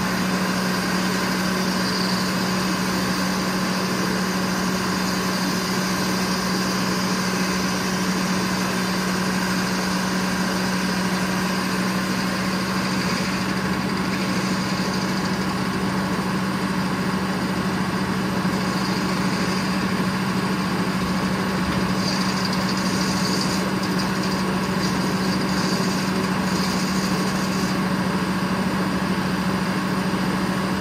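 Circular sawmill running steadily, its power unit and big circular head saw spinning with a steady hum that does not change in level.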